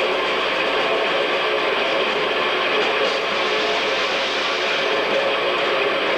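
Live death metal from a rock band: distorted electric guitars and drums played together as a dense, steady wall of sound, heard through an audience video recording.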